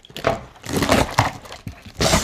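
Cardboard and packing tape scraping and crinkling as a taped shipping box is pulled open by hand, with a few sharp clicks, loudest about a second in.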